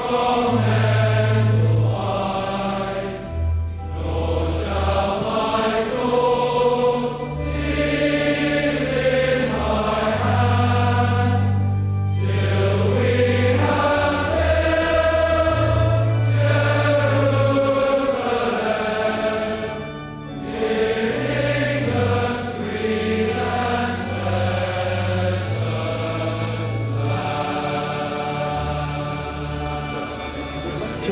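Choral music: a choir singing slow, sustained phrases over low held bass notes.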